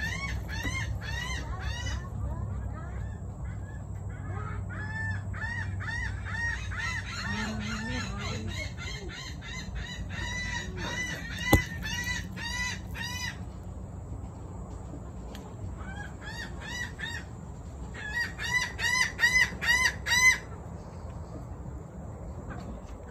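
A bird calling in rapid runs of short, sharp, arched calls, about three a second, in several bursts, the last and loudest run near the end. One sharp knock cuts in about halfway through.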